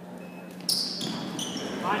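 Basketball play on a hardwood gym floor: from about two-thirds of a second in, sneakers squeak and a basketball bounces as the players scramble for the rebound, with a shout near the end.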